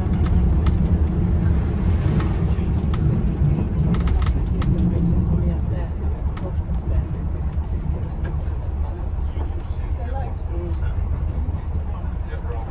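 Preserved Bristol LS single-deck bus on the move, heard from inside the saloon: a steady low engine and road rumble with clicks and rattles from the bodywork. The rumble eases and the rattling thins out about halfway through, with passengers talking faintly underneath.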